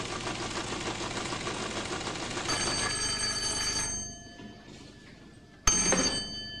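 A teleprinter clattering steadily, then an old desk telephone's electric bell ringing: one ring from about halfway that stops a second and a half later, and a second ring that starts suddenly and loud near the end.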